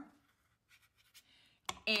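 Faint, scratchy strokes of a watercolor brush on textured watercolor paper, followed by a single sharp tap near the end.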